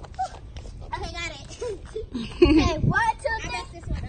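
Children's voices without clear words, with a loud high-pitched cry about two and a half seconds in.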